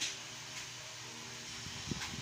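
Steady hiss of an electric fan running, with a faint click repeating about twice a second; low, voice-like sounds begin near the end.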